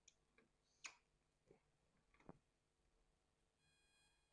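Near silence: room tone with a few faint, short clicks, the clearest two just under a second in and a little after two seconds.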